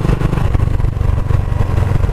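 Motorcycle engine running steadily while riding along at a constant pace, heard on board from the handlebars.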